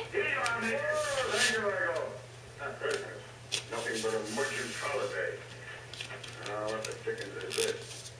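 Voices talking in the background, with a few short crinkles and rubs of stiff cardstock being folded, over a steady low hum.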